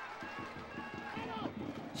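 Faint football-stadium ambience from the match broadcast, with distant, indistinct voices.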